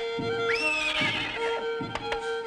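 A horse whinnies once, starting about half a second in: a sharp rise in pitch, then a wavering fall. It sounds over a music track with a held note and a soft beat.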